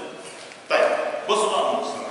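A man's voice speaking loudly in a lecture hall, in two short phrases that begin about two-thirds of a second in.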